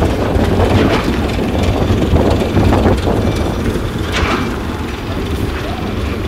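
Steady low engine rumble from running construction machinery, with faint voices underneath.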